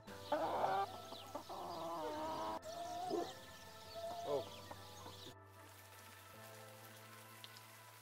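Chickens clucking and calling several times over the first four seconds or so, over soft background music that carries on alone afterwards.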